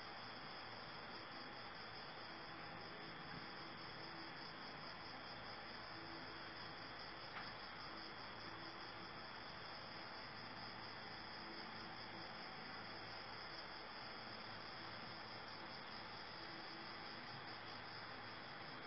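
Crickets chirping steadily in a continuous high trill over faint background hiss, with one faint click about seven seconds in.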